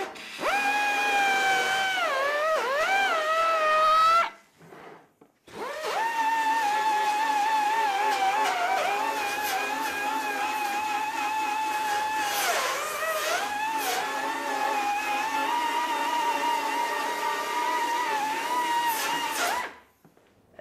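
Pneumatic finger belt sander running with a high, steady whine, its pitch sagging and wavering as it is pressed into the sheet-metal panel. It stops for about a second and a half about four seconds in, then runs again until just before the end.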